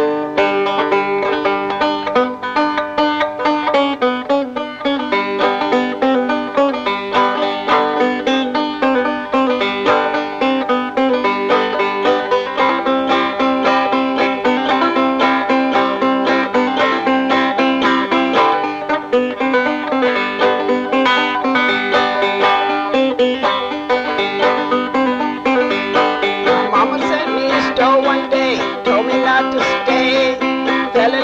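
Five-string banjo played left-handed and upside down, finger-picked in a steady, lively old-time tune, with the picking on four strings rather than all five.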